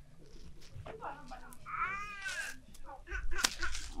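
A quiet pause with a short, faint voice-like sound that rises and falls in pitch around the middle, and a sharp snap about three and a half seconds in.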